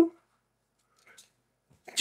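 A man speaking, trailing off at the start and resuming near the end, with a quiet pause between them.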